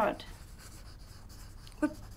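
Faint scratching strokes of drawing on paper at a desk.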